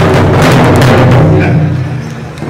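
Pow wow big drum being beaten by a seated drum group, a steady run of loud strokes that drops off near the end.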